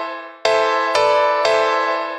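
Instrumental intro of a hip-hop beat: a keyboard chord struck three times, each ringing and fading away, with the chord changing on the middle strike.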